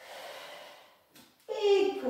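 A woman breathing out hard as she pushes up from a chair to standing, then a short, louder voiced breath near the end.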